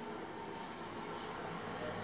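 Steady low background hum and hiss with no distinct events.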